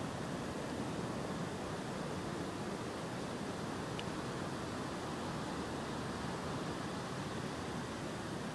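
Steady, even outdoor background hiss at a pond's edge, with no distinct event except one faint tick about halfway through.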